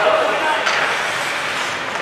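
Ice hockey game in an indoor rink: a reverberant hubbub of voices, with a shouted call at the start, skates scraping on the ice, and a sharp click about two-thirds of a second in.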